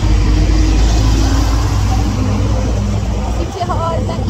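Motorcycle riding off, its engine running under a heavy, steady rumble of wind buffeting the phone's microphone.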